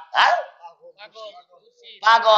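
A man's voice over a public-address microphone: one loud, short shout just after the start, then fainter broken vocal sounds.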